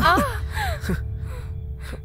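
A person gasping for breath: two short cries that fall steeply in pitch, then a sharp intake of breath near the end. Under them runs a low, sustained film-score drone.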